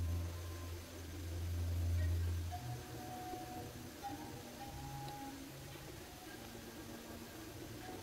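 A low steady hum that cuts off about two and a half seconds in, followed by faint, scattered short tones.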